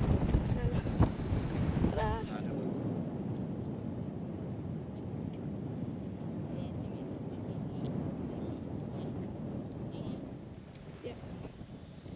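Wind buffeting the microphone, with a short voice, then a steady, even wash of wind and choppy sea that fades near the end.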